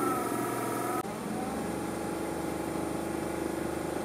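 Small electric drive motors of a model tugboat spinning the propeller shafts through their U-joints with a steady whine, running smoothly now that their alignment has been adjusted. In the first second the pitch sags a little, then the sound cuts to a quieter, lower steady whine.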